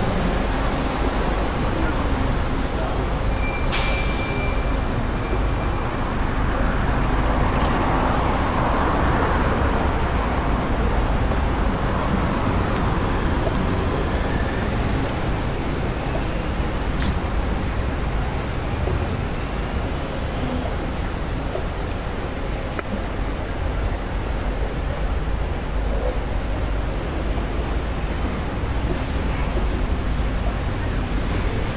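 Busy city street ambience: a steady rumble of road traffic, cars and buses passing, with a louder vehicle going by about eight seconds in, and voices of passersby.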